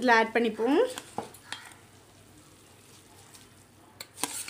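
A woman's voice briefly, then the faint, even bubbling of rice and water at a boil in an open aluminium pressure cooker, with two light clicks about a second in.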